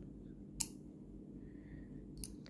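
One sharp click about half a second in as a screwdriver's steel tip meets the neodymium magnet in a small plastic sensor mount, then quiet handling.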